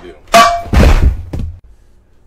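A metal frying pan clangs as it is grabbed off the stovetop: a sharp strike with a brief ringing tone. A second, longer loud noise follows about half a second later.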